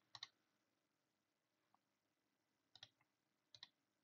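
Faint computer mouse clicks: three pairs of quick clicks, one at the start, one just before three seconds and one a little later, with near silence between.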